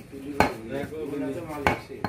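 Butcher's cleaver chopping goat meat on a wooden log chopping block: two sharp strikes about a second and a quarter apart.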